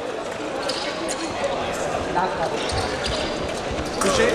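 Background hubbub of a large sports hall: indistinct voices with scattered knocks and thuds.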